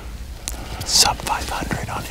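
Hushed, whispered speech: a man talking low with breathy, hissing consonants.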